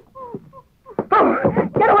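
A dog, done as a radio sound effect, whining in short high whimpers. About a second in, a loud cry breaks in and runs into a woman's frightened shout.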